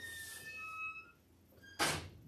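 A pause in a talk: a faint, thin squeak-like whine during the first second, then near the end a quick, sharp intake of breath just before speaking resumes.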